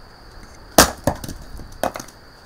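Hatchet chopping firewood on a wooden chopping block: a loud sharp strike into the wood just under a second in, a lighter knock just after, and a second strike near the end.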